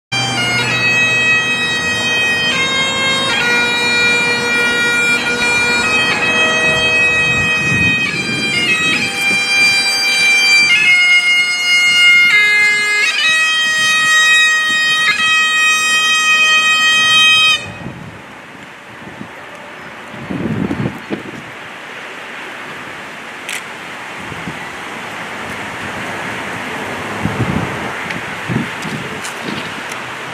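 Highland bagpipes playing a slow melody over their steady drone, which cuts off suddenly about two-thirds of the way in. An even hiss of wind on the microphone remains after it.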